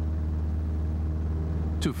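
Light aircraft's engine and propeller droning steadily inside the cabin, a constant low hum.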